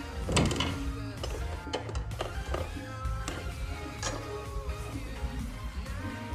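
Background music with steady held notes, with a few light knocks as a metal grab handle is set against the motorcycle's tail.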